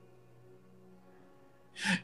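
A man's quick, audible intake of breath near the end of a short pause in his speech, over a faint steady background tone.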